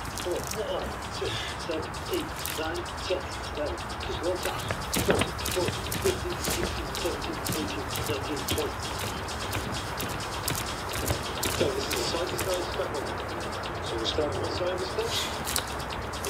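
Muffled, indistinct talk with many short clicks over outdoor background noise.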